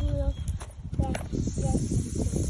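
A child's tricycle rolling along a concrete sidewalk, its wheels giving an uneven rumbling clatter. A couple of short voice sounds come about a second in.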